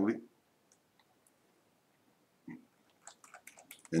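A few light computer mouse clicks in quick succession near the end, against otherwise near-quiet room tone.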